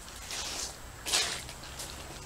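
Footsteps and brushing of someone moving along a wet, muddy creek bed among overhanging branches: a few short scuffs and rustles, the loudest about a second in.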